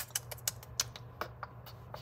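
A quick run of light, irregular clicks and taps, about a dozen, with one of the sharpest about a second and a half in.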